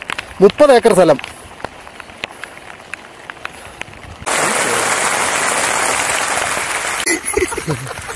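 Heavy rain hissing steadily. It starts abruptly about four seconds in and lasts about three seconds.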